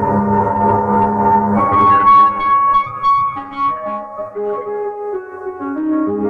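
Impact Soundworks Water Piano sampled instrument played from a keyboard on its Canadian Springs preset. Held, ringing notes overlap under the sustain pedal, with new higher notes entering about two seconds in and the lower notes moving step by step later on.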